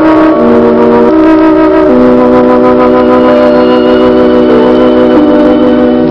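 Music: slow organ chords with long held notes, the harmony shifting every second or so.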